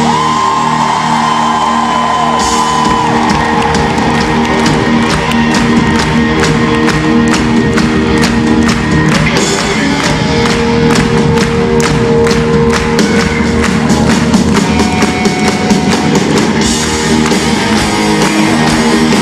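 Live rock band holding sustained electric guitar chords, with a held high note near the start. Over it the audience claps a steady beat and cheers.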